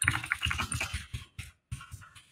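Typing on a computer keyboard: a quick run of keystrokes through the first second, thinning to scattered single taps.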